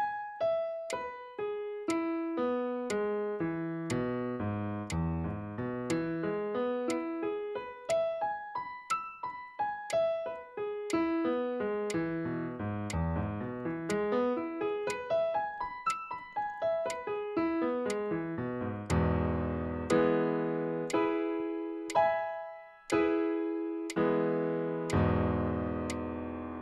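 Digital piano playing a repetitive finger exercise: evenly paced single notes, about two a second, stepping down and back up the keyboard in long runs. From about two-thirds of the way in come fuller chords struck roughly once a second, each left to ring.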